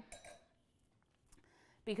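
A wine glass set down on a stone countertop: a brief clink with a faint high ring just after the start, then quiet apart from a small tick.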